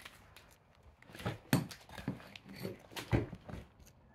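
Footsteps crunching and knocking over rubble and loose, rotten floorboards: a run of irregular short knocks starting about a second in, loudest near three seconds. The floor underfoot is weak enough that it feels about to give way.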